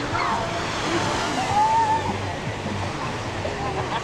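Gentle surf washing onto a sandy beach, with distant voices of people in the water carrying over it; one drawn-out shout or call stands out midway.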